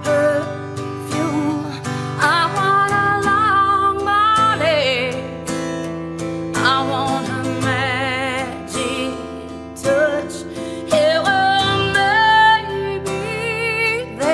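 A woman singing a slow country ballad to her own strummed acoustic guitar, holding long notes with vibrato.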